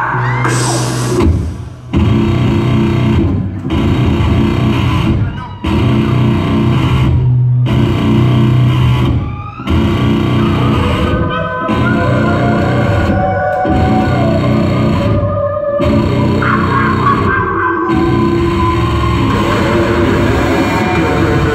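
Live hardcore punk band playing a stop-start riff: distorted electric guitar, bass and drums, cutting out briefly about every two seconds before crashing back in.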